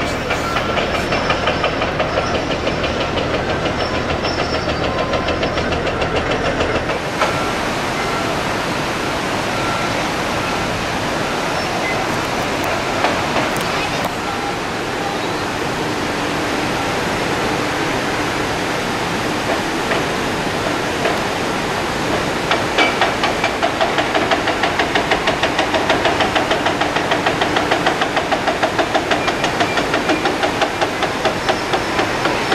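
Water rushing over a dam spillway, with a rapid rhythmic mechanical knocking from an excavator working at the foot of the dam. The knocking is strongest near the end, at about three beats a second.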